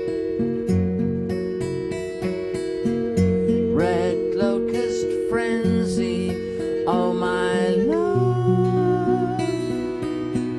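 An instrumental passage of acoustic guitar strumming chords with cello and musical saw. A long, wavering high note is held, and at about eight seconds it slides off and new held notes glide in.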